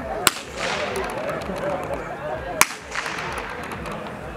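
Two blank-pistol shots a little over two seconds apart, each a sharp crack with a brief echo: the gunfire test fired while a dog heels off-lead in IPO obedience.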